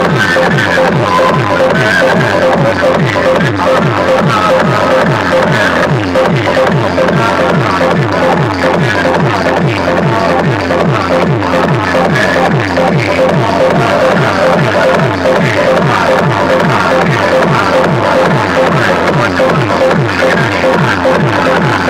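A DJ dance track blasted at very high volume through a large stack of horn loudspeakers, with a fast, steady beat and little deep bass.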